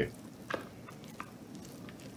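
Cooked fried cabbage being pushed out of a frying pan onto a plastic plate: a faint soft squishing shuffle of the greens, with a couple of light clicks of the utensil against the pan.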